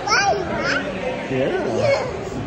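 A toddler's wordless vocalising: short high calls and 'oh' sounds sliding up and down in pitch, several in a row.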